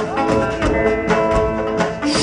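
Live rock band music: a drum kit keeping a steady beat under guitar and other sustained instruments.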